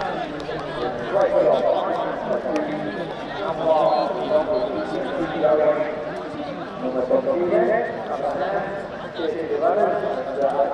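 Overlapping chatter of spectators talking among themselves, several voices at once with no single voice clear.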